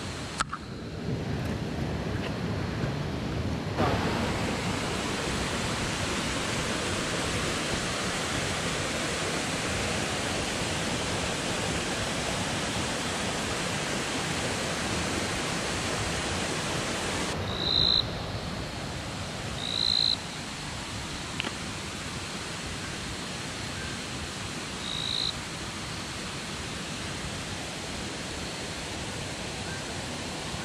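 Steady rush of a mountain creek's flowing water. A few short, high chirps come through it near two-thirds of the way in.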